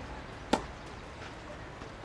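A tennis racket striking a ball once about half a second in, a single sharp pop.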